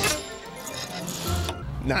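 Animated film soundtrack: score music with mechanical, metallic movement sounds from the giant robot, beginning with a sharp hit and a low rumble coming in past the middle.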